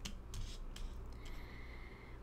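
A tarot card being slid off the deck and laid face up on a wooden table: a few short scrapes and taps of card stock in the first second.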